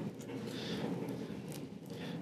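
Faint rustling and light scratching of gloved hands peeling adhesive tape and moving wire bundles on a sheet-metal TV chassis.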